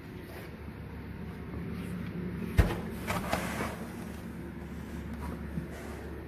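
A single sharp knock a little under halfway through, followed by a few fainter knocks and rustles, over a steady low hum.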